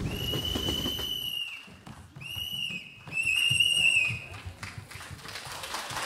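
A high, shrill whistle blown three times: a long blast of about a second and a half, a short one, then one of about a second that wavers slightly.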